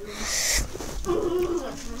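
A short breathy hiss, then a soft, low hum from a person's voice, a wordless murmur like an owl's hoot.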